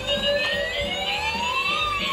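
Battery-powered toy fire truck's electronic siren wailing: one slow rise in pitch over about a second and a half, then starting to fall.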